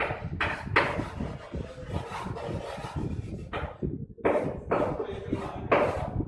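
Chalk writing on a chalkboard: a run of short scratching strokes and taps as a word is written out, about two a second, over a steady low background noise.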